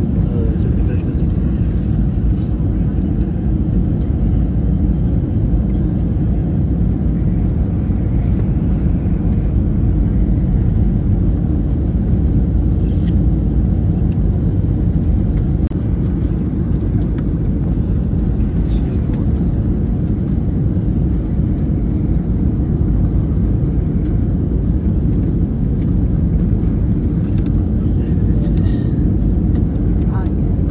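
Steady low rumble inside an airliner cabin during final approach: engine and airflow noise coming through the fuselage, holding even with no sudden changes.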